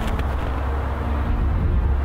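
Steady low outdoor rumble with a lighter hiss above it, unchanging throughout.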